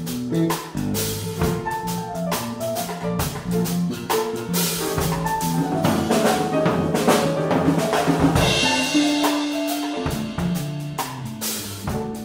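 Small live band playing an instrumental groove: drum kit, grand piano and electric bass guitar together, with the drums busiest in the middle of the passage.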